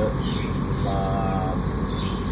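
Steady low rumble of outdoor background noise, like distant traffic, with a short steady tone lasting about half a second starting about a second in.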